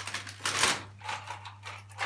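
Crinkling and rustling of plastic snack packages being handled, in short bursts, the loudest about half a second in, over a steady low hum.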